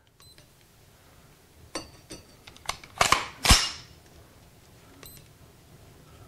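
Remington AR-style rifle's trigger being drawn with a trigger-pull gauge: a few small mechanical clicks, then one loud sharp snap about three and a half seconds in as the trigger breaks and the hammer falls on the empty rifle.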